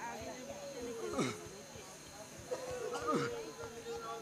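A man's voice giving long falling cries, one about every two seconds, each sliding from a high pitch down to a low one. A steady held tone joins about halfway through, over a faint steady high hum.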